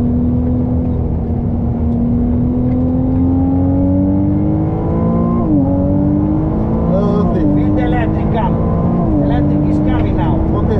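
Ferrari 296 GTB's twin-turbo V6 pulling hard under full power, its note climbing steadily through one long gear. The note drops sharply with a quick upshift about halfway, then drops twice more with rapid upshifts near the end.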